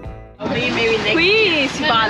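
Instrumental background music fades out. About half a second in, the steady rush of a small open motorboat under way (engine, water and wind on the microphone) cuts in, with a voice over it.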